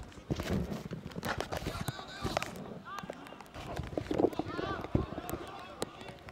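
Live football-match ambience from the stands: players and spectators calling and shouting, with scattered sharp knocks.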